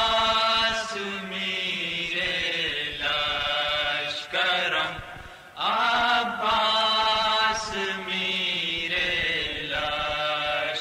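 Unaccompanied nauha, a Shia lament, sung in long, drawn-out melodic phrases; a new phrase begins a little over halfway through.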